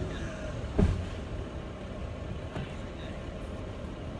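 A felled tree trunk hitting the ground: one heavy thud about a second in.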